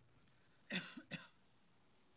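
A person coughing twice in quick succession, two short coughs about a second in, the first the louder.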